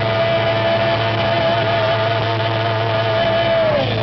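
Live rock band holding one long, slightly wavering high note over a sustained low chord; just before the end the note slides down.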